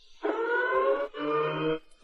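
A short dramatic sound effect: a siren-like tone rising in pitch, in two parts of about three quarters of a second each.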